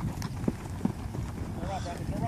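Footsteps of football players sprinting on dry grass: a few quick thumps about a third of a second apart, over a low rumble of wind on the microphone. Shouting voices start near the end.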